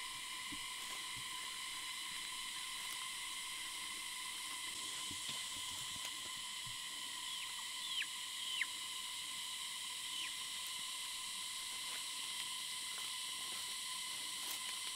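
A chick chirping: a few short peeps falling in pitch past the middle, the two loudest just over half a second apart, over a steady high insect drone.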